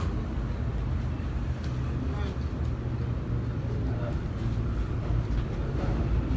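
Steady low background rumble, with faint voices behind it.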